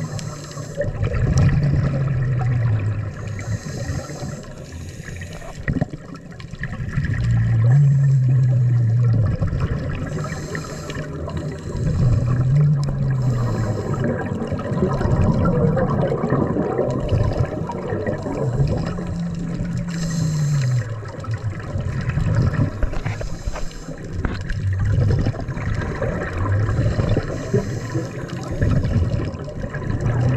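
Underwater sound picked up through an action camera's waterproof housing: muffled water movement and bubbling, with a low hum that rises and falls every few seconds.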